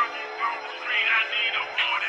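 Dark Memphis phonk music in a quiet break: a processed vocal sample over a sustained synth pad, with no drums or bass.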